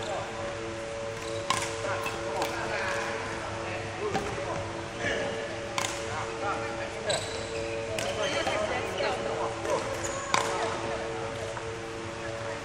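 Badminton rackets striking shuttlecocks in a large indoor hall: about half a dozen sharp, irregularly spaced hits over a steady hum.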